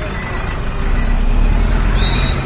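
Bus engine running close by, its low rumble growing louder as the bus draws alongside.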